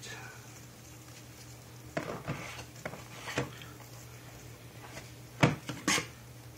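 Handling sounds: a few faint clicks and rustles, then two sharp knocks near the end, over a steady low hum.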